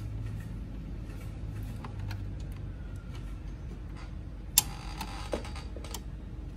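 Small screwdriver clicking against the plastic and metal parts of a Canon G-series ink-tank printer's print-head carriage, with one sharp click and a short ring about four and a half seconds in, over a steady low hum.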